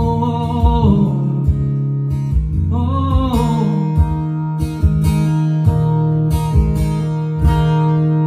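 Live solo acoustic guitar strummed steadily, with a man's voice holding a long sung note that ends about a second in and singing a short phrase about three seconds in.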